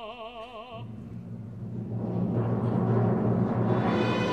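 Opera music: a woman's voice holds a high note with wide vibrato that breaks off under a second in. Then a low rumble from the orchestra, like a timpani roll under low strings, swells steadily louder in a crescendo.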